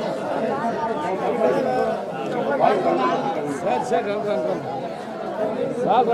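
Many men's voices talking over one another in a steady, overlapping chatter, with no music playing.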